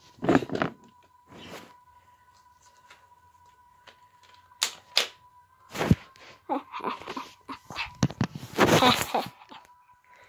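Handling noise close to the microphone: scattered sharp knocks and a low thump about six seconds in, as the mystery package is handled, with brief bursts of a child's voice or laughter after it. A faint steady high tone runs underneath.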